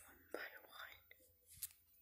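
Near silence, with faint whispering and a short, sharp click about a second and a half in.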